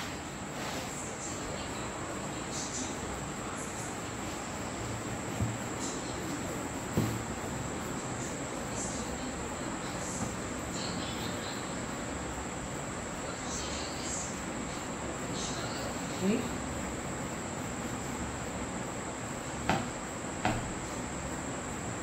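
A steady high-pitched whine over a background hiss, with a few faint knocks, twice near the start and twice near the end, as a knife trims a cake.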